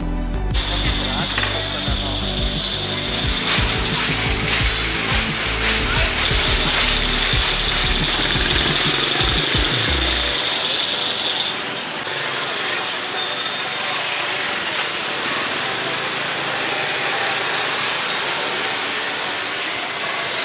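Busy street noise with motorbike engines passing and a steady high whine over the first half. After about ten seconds it settles into a more even wash of street noise.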